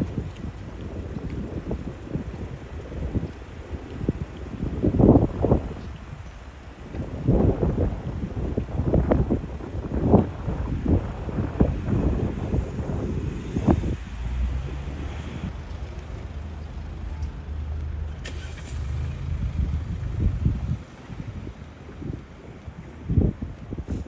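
Wind buffeting the microphone in irregular gusts over city street traffic, with a steady low engine hum from a vehicle in the second half.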